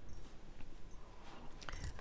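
Quiet handling noise of fine wire being worked on round-nose pliers, with a few light metallic clicks near the end as the pliers are set down on the work mat.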